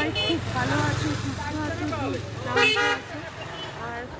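A vehicle horn sounds one steady toot, about half a second long, a little past the middle, over a low street-traffic rumble.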